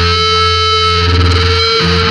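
Loud, heavily distorted electric guitar and bass holding a low sustained chord, the pitch shifting slightly near the end, in a grindcore/powerviolence recording.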